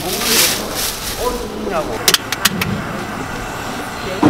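Indistinct talking over a low steady rumble, with a quick run of four or five sharp clicks a little after two seconds in.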